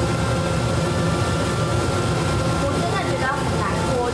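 Steady low drone of commercial kitchen ventilation fans, with a constant thin whine over it. A voice comes in briefly near the end.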